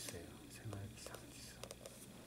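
A spoken word trails off, then a quiet pause with a few faint clicks.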